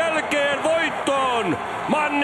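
Speech: a sports commentator talking in a raised voice.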